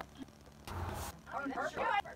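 Indistinct voices and laughter of people at a card table, with a short soft rush of noise just before the voices.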